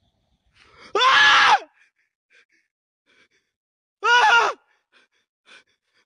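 Two loud, pitched cries, each about half a second long and about three seconds apart.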